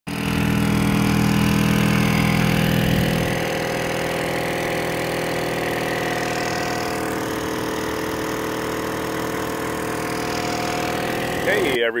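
Small portable generator running steadily with an even engine hum, louder for the first three seconds or so and then a little quieter.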